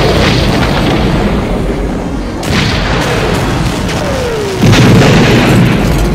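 Film soundtrack of an AT-AT walker being blown apart from inside: a sudden blast about two and a half seconds in, then a short falling whine and a louder explosion, the loudest moment, about a second before the end, over background music.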